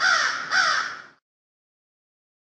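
A crow cawing: two harsh caws about half a second apart, each falling in pitch, ending about a second in.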